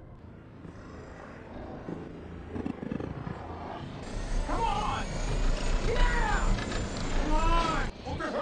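Action-film sound mix: a deep rumble swells in about four seconds in, and repeated wavering shrieks and roars of the zombies rise above it, loudest near the end.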